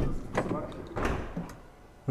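A couple of knocks and clunks, one at the start and one about a second in, with faint voices between them; the sound dies away toward the end.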